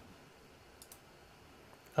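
A few faint computer mouse clicks around the one-second mark, over quiet room tone.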